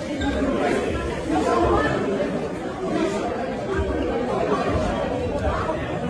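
Crowd chatter: many people talking over one another at once, no single voice standing out.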